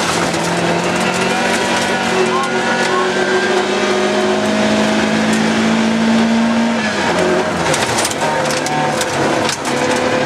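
Rally car's engine heard from inside the cabin, pulling hard on a gravel stage with its pitch climbing steadily for about seven seconds, then falling away and settling. Sharp clicks of gravel striking the car come in near the end.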